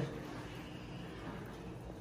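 Quiet, steady background hum and hiss (room tone) with no distinct sound event.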